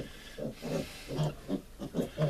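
Young piglets grunting: several short grunts spread through the two seconds.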